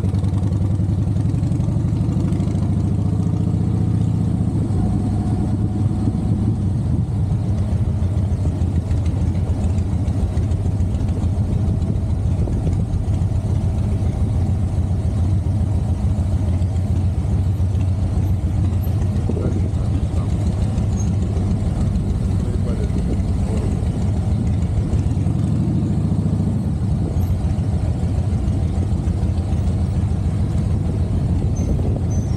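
Harley-Davidson motorcycle's V-twin engine running steadily as the bike is ridden at low speed, with a deep, even firing pulse.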